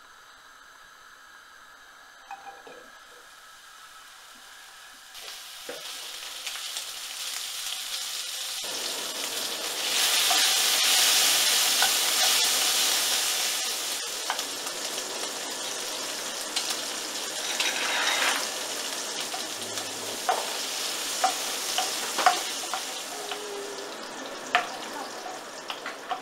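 Diced pancetta frying in a non-stick pan, a sizzle that starts faint, swells to its loudest about ten seconds in, then holds steady. In the later part a wooden spatula clicks and scrapes against the pan as the pancetta is stirred.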